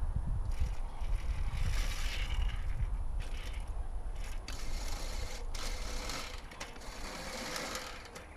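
A hand-pushed lawnmower running over grass, its mechanism whirring in spells of a second or so as it is pushed. Wind rumbles on the microphone throughout.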